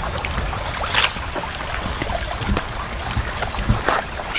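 Outdoor field ambience: a steady low wind rumble on the microphone under a steady high hiss, with scattered light clicks and taps, the sharpest about a second in.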